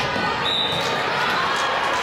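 Volleyball rally in a gymnasium: the ball being hit, over a mix of players' and spectators' voices echoing in the hall.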